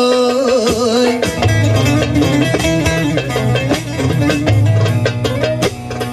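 Turkish folk music: a man's voice ends a held, wavering sung note about a second in, then a long-necked bağlama (saz) plays a quick instrumental passage over a steady low tone, with frequent darbuka strokes.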